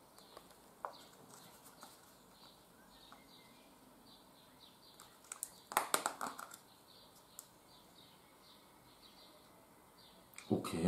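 Clear plastic tub of wax melts being handled and its lid pried open: a brief cluster of sharp plastic clicks and crackles about six seconds in, with a few faint single clicks around it.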